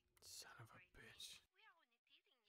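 Faint whispering. About one and a half seconds in, the low background cuts out suddenly and faint, quickly gliding voices go on.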